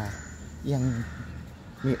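A woman speaking Thai in slow, drawn-out syllables; no other sound stands out.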